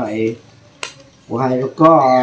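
A person speaking, with a short pause in which a single sharp click or tap sounds, just under a second in; speaking resumes about a second and a half in.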